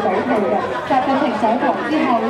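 A woman speaking into a handheld microphone, amplified through a small portable speaker, with crowd chatter around.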